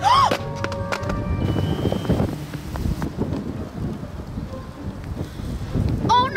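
Background music over gusty wind buffeting the microphone, with a short rising cry from a girl at the very start.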